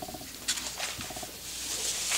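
Sheets of paper being handled and rustling, with a few light knocks. Two brief chirping squeaks about a second apart.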